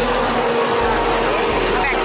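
Loud steady street noise with voices in the background.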